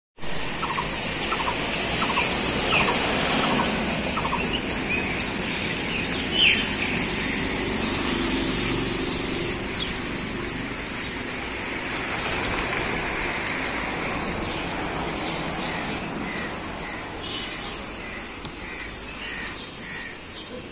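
Birds calling in short chirps over a steady outdoor background noise, the calls coming thickly in the first seven seconds, with one louder call about six seconds in, and again near the end.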